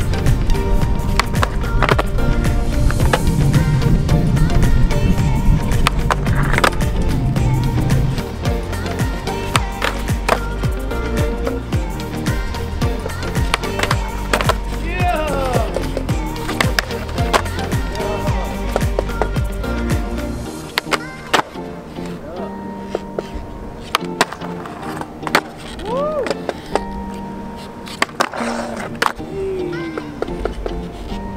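Skateboard wheels rolling on a concrete skatepark with repeated sharp board pops and landings, under background music. The music's bass drops out about two-thirds of the way through.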